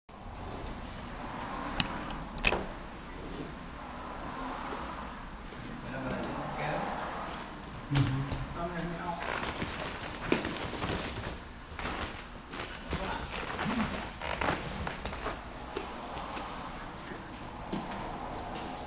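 Indistinct voices in a room, with a few sharp knocks scattered through it; the loudest knocks come about two and a half seconds in and about eight seconds in.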